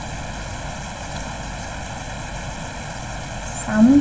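Steady background hiss and hum of a voice recording, with no distinct events, until a woman's voice starts speaking near the end.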